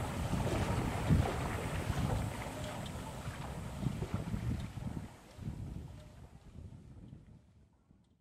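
Wind noise on the microphone over water sloshing as a person wades through floodwater, fading out over the last few seconds.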